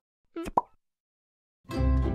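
A short cartoon plop sound effect about half a second in. After a brief silence, music with a deep bass starts near the end.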